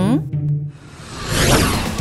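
A whoosh transition sound effect swelling over about a second and peaking just as the scene changes, over light background music.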